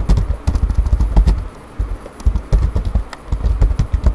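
Computer keyboard being typed on: irregular key clicks with heavy low thuds, loud and close to the microphone.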